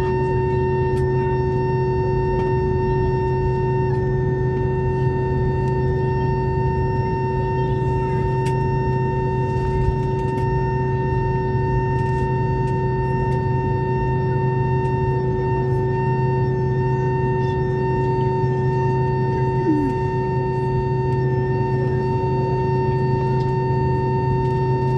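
Airbus A319 cabin noise during taxi: the jet engines running at idle give a steady whine made of several held tones over a low hum and rushing air.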